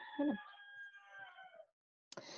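A rooster crowing faintly in the background: one long held call that fades out about a second and a half in. A short tail of a woman's voice comes at the very start.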